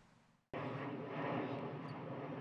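A steady outdoor drone that cuts in abruptly about half a second in, after a brief fade to near silence.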